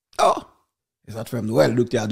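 A man's voice: a short sigh-like breath near the start, then speech again from about a second in.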